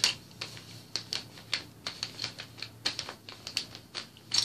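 Small plastic building bricks clicking and clattering against each other as they are picked through and handled in a pile: irregular sharp clicks, several a second.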